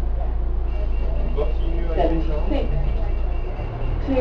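London double-decker bus engine running with a steady low drone, heard from inside the bus; the drone dips briefly near the end. A passenger's voice speaks briefly in the middle.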